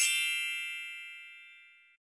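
A single bright chime struck once, ringing out and fading away over about two seconds.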